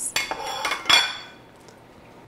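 A wooden spoon and a small ceramic plate knock and scrape against a glass mixing bowl as spices are scraped in. There is a quick run of clinks over about the first second, the loudest near one second in.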